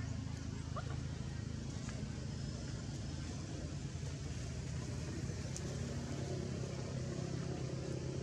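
Steady low hum of an engine running, with a brief faint high chirp a little under a second in.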